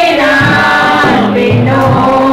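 Three women singing a hymn together into microphones, in long held notes that glide from one pitch to the next.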